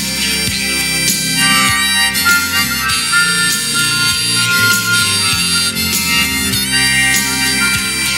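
Harmonica solo played into a microphone, holding long notes with a few bent ones, over a backing of bass and drums.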